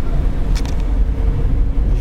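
Car engine and road noise heard inside a moving car's cabin, a steady low rumble, with a light click about half a second in.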